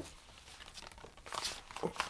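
A pause in talk: faint room tone, with a few soft, brief rustles in the second half.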